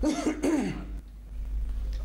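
A man clearing his throat into a PA microphone in the first second, a short voiced rasp falling in pitch, followed by a quieter stretch with a steady low mains hum from the sound system.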